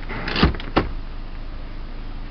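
A short rubbing rustle ending in a sharp click, then a second sharp click a moment later, as a hand handles the car's front leather seat.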